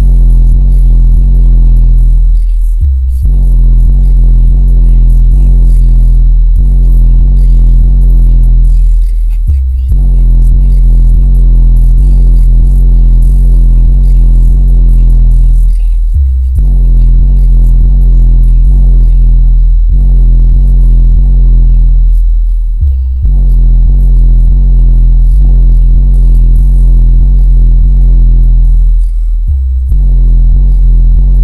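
Bass-heavy electronic music played very loud through two large subwoofers in a car-audio build, heard inside the vehicle's cabin. Deep bass notes are held, with a short break about every six and a half seconds.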